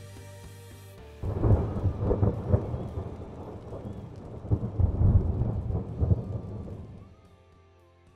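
A low, crackly noise like distant thunder in the outro soundtrack, starting about a second in with uneven surges and fading away near the end.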